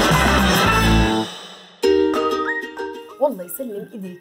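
A television show's music jingle: a loud burst of music that fades out about a second in, followed by a quieter musical phrase with a voice coming in near the end.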